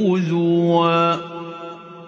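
A male Quran reciter's voice chanting in slow tajweed style. He bends the pitch, then holds one long melodic note that ends about a second in, and the sound dies away in a fading echo.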